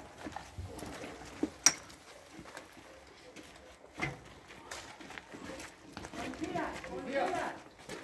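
Officers moving in at a doorway during a night raid: a few sharp knocks, the loudest just before two seconds in and another at about four seconds, over a low rustle of movement, then indistinct voices rising near the end.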